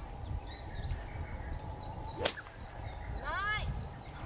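A golf ball struck off a grassy slope with a 4-utility (hybrid) club, giving one sharp crack about two seconds in. About a second later a brief pitched sound arches up and then down.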